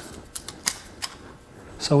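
A few light clicks of wooden craft sticks being handled on a tabletop, about three taps spaced a third of a second apart.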